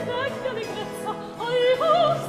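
Baroque opera singing: a high voice sings a quick, ornamented line with wide vibrato over a sustained low accompaniment.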